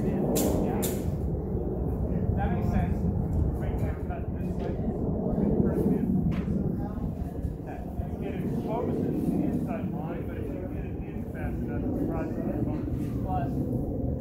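Steady low wind noise buffeting the microphone. Near the start, two sharp metallic clicks about half a second apart as steel sparring blades, a rapier and a jian, meet in an exchange, with another click about six seconds in.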